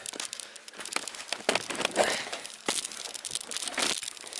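Irregular rustling, clicks and knocks of handling noise as a trolling-motor battery box is carried with a swinging handheld camera.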